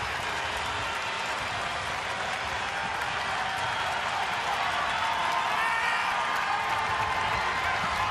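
Steady ballpark crowd noise, a general murmur with some scattered applause, growing slightly louder toward the end.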